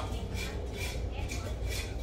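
A pause in speech filled by a low, steady background hum, with a few faint soft ticks.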